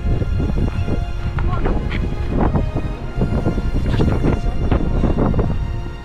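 Running footsteps crunching on a stony track, with wind rumbling on the microphone and background music underneath. The footsteps and wind cut off near the end, leaving only the music.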